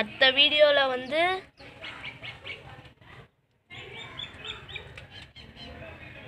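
A loud, drawn-out vocal call lasting about a second and a half at the start, its pitch dipping and then rising sharply at the end, followed by faint background sound.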